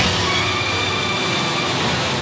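A steady, dense sound effect for a glowing magical power, over held tones of dramatic background music.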